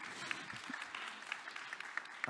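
Audience applauding lightly: a faint, scattered patter of hand claps.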